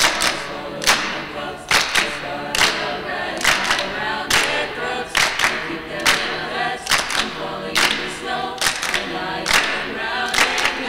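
High school choir singing unaccompanied, with the singers clapping their hands on the beat about once every second.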